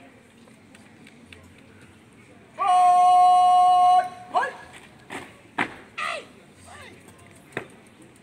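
Drill commands shouted to a marching squad: one long, drawn-out call, then several short, sharp shouted words as the squad comes to a halt.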